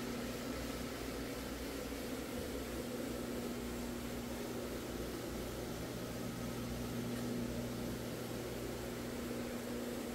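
A 175 rpm single-disc rotary floor machine running steadily, its motor giving a constant hum as the pad scrubs thick carpet.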